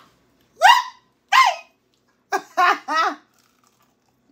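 A woman's voice without clear words, laughing and giving short high exclamations. There is one rising call, then another, then a quick run of three near the middle of the clip.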